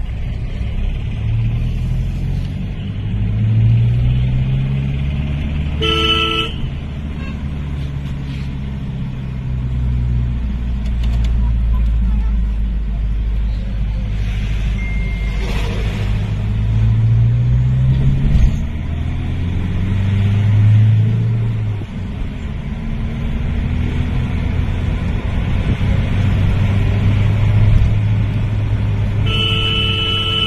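Diesel tractor engines running in heavy road traffic, their low drone rising and falling in pitch as the machines pass and rev. A vehicle horn honks briefly about six seconds in, and another sounds again near the end.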